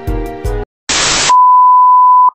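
Background music stops, then a brief burst of television static hiss gives way to a steady, loud, high test-tone beep of the kind played with TV color bars.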